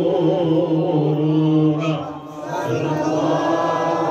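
A man chanting Arabic Mawlid text in a slow melodic recitation, holding long wavering notes, with a short break about two seconds in before the next phrase.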